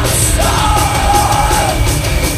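Live heavy rock band playing loud, with a long yelled vocal note held for over a second over distorted guitars and drums, recorded from within the crowd.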